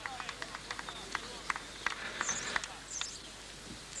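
Faint voices in the distance over outdoor ballfield air, with many sharp, irregular clicks and a few brief high chirps a little past the middle.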